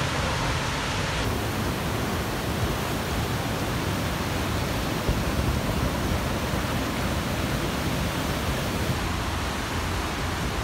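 Steady roar of a large, high-volume waterfall, heard from near its base and brink, with deep rumble and hiss together. The sound shifts abruptly about a second in, turning hissier.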